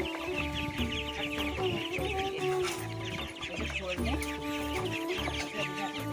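A flock of young ducks and chickens cheeping continuously, many short high chirps overlapping, over background music with a steady drone and beat.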